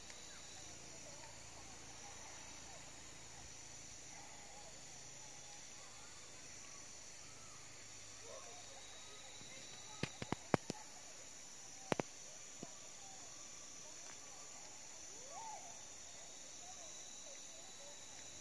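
Steady high-pitched drone of an insect chorus. It is joined by faint wavy calls, a quick run of sharp clicks about ten seconds in, and two more about two seconds later.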